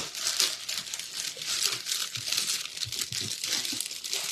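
Plastic garment packaging crinkling and rustling as packed clothes are rummaged through in a box.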